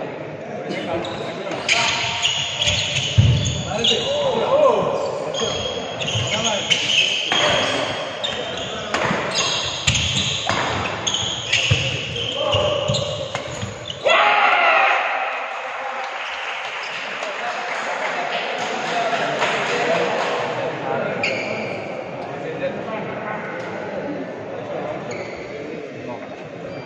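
Badminton doubles rally: sharp racket strikes on the shuttlecock, about one a second, and shoes on the wooden court, echoing in a large hall over a bed of voices. About 14 seconds in the strikes stop and loud voices break out suddenly, then die down.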